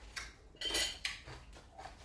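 A spoon clinking and scraping on a plate of food in a few short knocks, the loudest a ringing clink a little under a second in.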